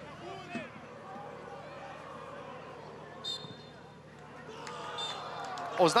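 Quiet football-stadium ambience: a sparse crowd's low murmur with faint distant shouts. A brief high whistle peep comes about three seconds in, and the crowd noise swells near the end.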